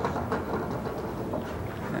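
Candlepins and fallen wood rattling and settling on the pin deck after the ball hits, fading away over the low rumble of the bowling lanes.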